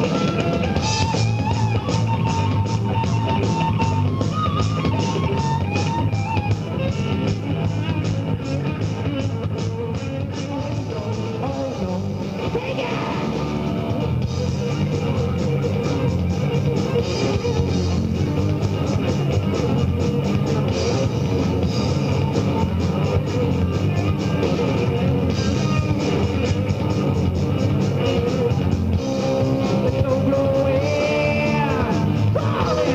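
Hard rock band playing live: electric guitar, bass guitar and drum kit in a dense, loud full-band passage with a busy drum beat.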